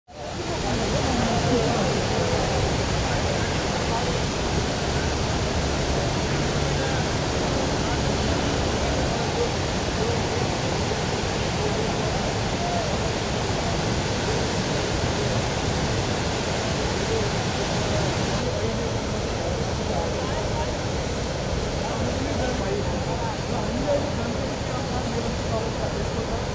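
Floodwater of the swollen Melamchi River rushing in spate, a steady loud noise of churning, muddy water with no let-up.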